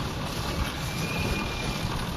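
Steady low noise of a ride in a moving pedal rickshaw, with wind on the microphone.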